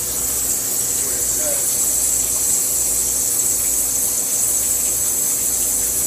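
Wire EDM machine cutting steel: a steady high hiss from the cut, where the wire sparks into the workpiece under flushing water, over a steady machine hum.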